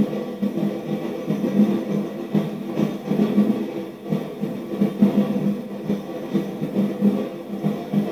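Drum-led parade music with a steady beat, played by a dance troupe's drummers and heard through a television's speaker.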